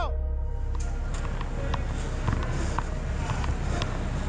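A body-worn camera's steady low rumble, with scattered light clicks as the wearer moves, and faint music underneath.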